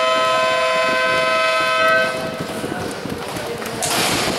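Basketball scoreboard buzzer sounding one long steady horn tone, which stops about two seconds in, marking the end of the quarter.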